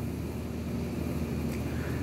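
Steady low background hum with a faint even hiss.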